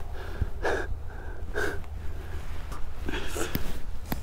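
A man's few short, breathy exhales as he handles a freshly landed catfish, over a steady low rumble, with a couple of faint clicks near the end.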